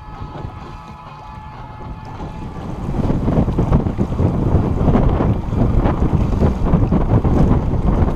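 Wind buffeting the microphone on an open boat, getting much louder about three seconds in and staying loud.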